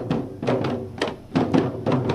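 Large dhol drums beaten by dancers in a Manipuri dhol cholom drum dance: sharp, resonant strokes with a short booming ring, coming in an uneven rhythm of about two to three a second.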